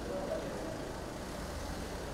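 Steady low rumble of a car engine idling, with street noise and a brief faint voice about a quarter second in.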